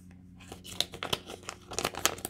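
Polymer banknotes and a clear plastic binder envelope crinkling and rustling as a $20 bill is handled and slid into the envelope. The crackles are quick and irregular, denser and louder after about half a second.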